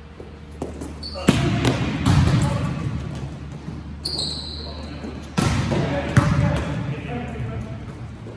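Volleyball rally in a gym: a few sharp slaps of hands and forearms on the ball, about a second in and twice more a little past the middle, each echoing off the hall. A brief high shoe squeak on the court floor comes around the midpoint, with players' voices in between.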